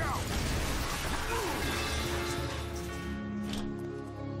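Cartoon sound effects of a tower collapsing: a dense crashing rumble over dramatic score music, clearing about three seconds in to held music chords.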